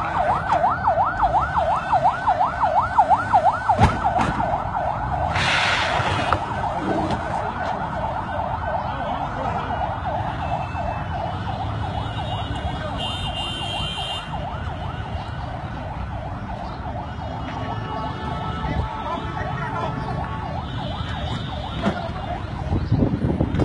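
An electronic siren-type alarm warbling rapidly up and down, several sweeps a second, sounding steadily throughout, with a short loud burst of noise about five seconds in.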